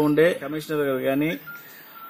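A man speaking Telugu into a microphone, breaking off about a second and a half in; in the pause a faint, steady, high beep-like tone sounds.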